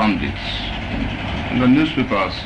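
Speech in an office, with a low, steady background rumble filling the gap between phrases; a voice starts again near the end.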